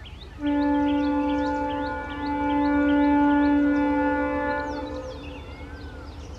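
Indian Railways locomotive air horn sounding one long blast. It starts about half a second in, dips briefly about two seconds in, swells again and fades out near the end. Birds chirp throughout.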